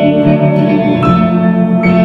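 Live electric guitar strumming sustained chords over a keyboard, with a new chord struck about a second in and another near the end; no singing.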